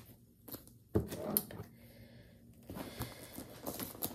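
Handling noise from a Michael Kors tote bag as an iPad is slid into its front pocket: faint rustling and light knocks, with a sharp click about a second and a half in and a run of small rustles near the end.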